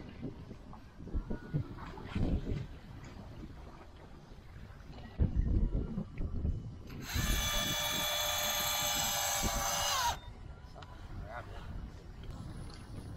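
An electric fishing reel's motor whines steadily for about three seconds, starting about seven seconds in and cutting off suddenly as it winds line in on a deep-drop rig. Earlier, a few low thumps and rumbles are heard.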